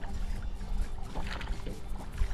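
Background music over a steady low rumble, with a small largemouth bass splashing briefly at the surface, a little past the middle, as it is reeled in on a topwater lure.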